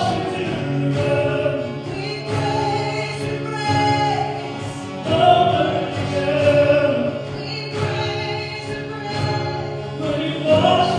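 Worship music: several voices singing a slow song together in long held phrases over sustained instrumental backing.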